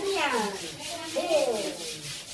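Stiff brush scrubbing mossy cement in rapid repeated strokes, with a short wordless voice gliding over it in the first second or so.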